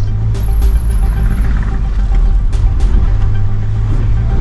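Car cabin rumble from the engine and tyres of a slowly moving car, heard from inside, with background music over it. There is a brief high whine early on and a few sharp clicks.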